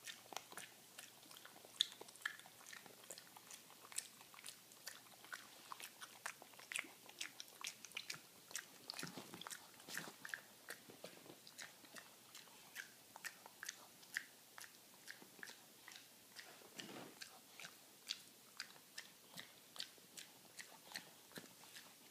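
Boston terrier chewing a walnut and smacking her lips: a quiet, irregular run of short wet clicks and crunches, a few a second.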